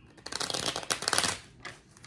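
A tarot deck being shuffled: a quick run of fast card clicks lasting about a second, stopping shortly before the end.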